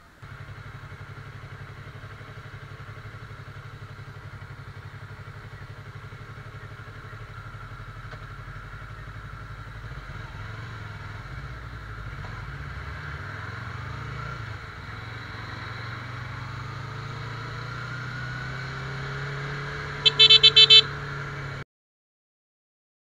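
Sport motorcycle engine running steadily in slow traffic, slowly getting louder as the bike picks up speed. Near the end a horn gives a quick run of loud beeps, then the sound cuts off suddenly.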